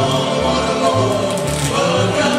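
Gospel song performed live by a small group singing in harmony, backed by acoustic guitar, electric guitar, banjo and upright bass, the bass sounding about two notes a second.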